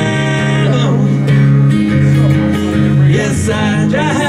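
Live solo acoustic guitar strumming held chords, with a man singing over it in a wordless, wavering line.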